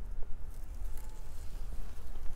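Faint rustling of leafy radish and lettuce plants as a hand parts them, over a steady low rumble.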